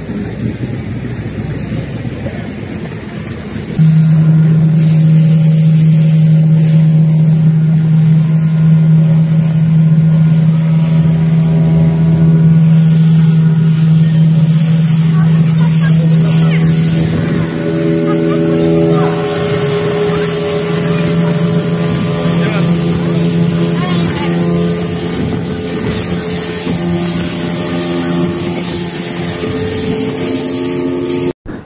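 Speedboat engine running at a steady drone under a rush of wind and water. It gets much louder about four seconds in.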